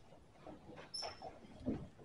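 Faint shuffling, rustling and knocks of a congregation getting to its feet from the pews, with one short high squeak about a second in.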